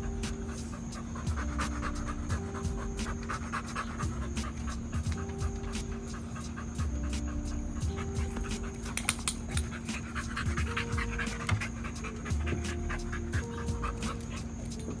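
A bully-breed dog panting close by, over background music with melodic notes and a steady beat.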